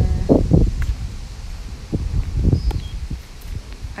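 Wind on the microphone, a steady low rumble, with a few brief fragments of voice and faint clicks.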